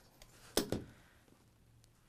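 A rotary cutter rolls through quilting cotton along an acrylic ruler on a cutting mat, trimming the block, with one short, crisp cut about half a second in.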